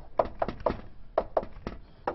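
Chalk tapping against a blackboard as symbols are written: about six sharp, irregularly spaced knocks.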